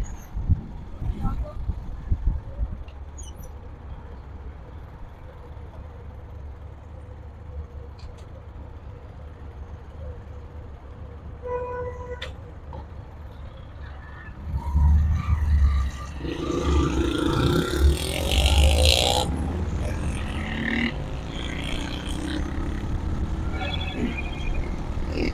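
A small motorcycle's engine runs low and steady in stopped traffic, then gets louder from about fifteen seconds in as the bike gets under way, with wind rushing over the microphone. A short beep like a vehicle horn sounds about twelve seconds in.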